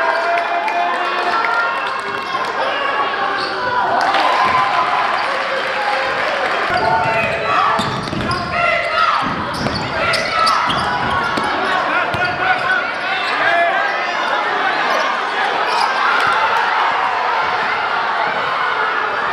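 Live basketball game sound in a gymnasium: many overlapping voices from players and crowd, with a basketball bouncing on the hardwood floor.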